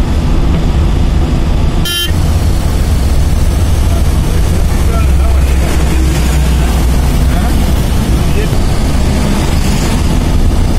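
Steady engine and road rumble heard from inside a moving vehicle at highway speed, with a short click about two seconds in.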